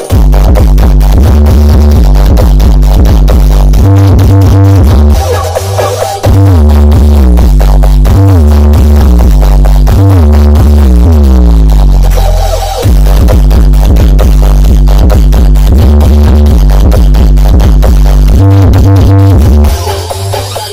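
Electronic dance music with heavy bass played at very high level through a large stacked sound system of triple-magnet 21- and 18-inch Betavo subwoofers. It is loud enough to hit full scale. The bass breaks briefly about five seconds in, and a falling sweep leads into a fresh bass drop about thirteen seconds in.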